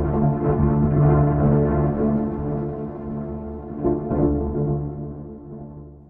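A thunder recording fed through the Hammer And Chord virtual string resonator, a Karplus-Strong JSFX effect, with spring reverb. The rumble becomes a sustained chord of ringing virtual strings that swells again with a second roll about four seconds in, then fades out.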